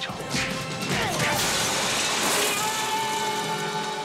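Movie-trailer soundtrack: music with a crashing, smashing sound effect, and a held note coming in about three seconds in.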